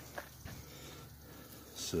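Quiet outdoor background between a man's words, with a short breath intake near the end just before he speaks again.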